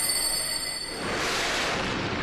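Anime soundtrack audio: high, bright ringing tones sustained for about the first second, then a swelling hiss.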